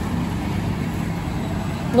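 Steady low hum with a rushing noise under it, the running sound of aquarium tanks' pumps and filters.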